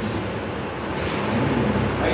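Steady rushing background noise with a faint low hum, and no speech.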